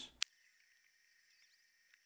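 Near silence after a voice trails off, with one short sharp click about a fifth of a second in.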